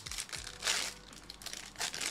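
A Topps Chrome trading-card pack's wrapper being torn open and peeled back by hand, crinkling in irregular bursts. The loudest burst comes about two-thirds of a second in, with another near the end.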